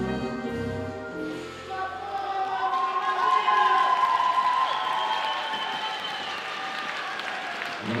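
Slow rumba dance music dying away about two seconds in, followed by audience applause.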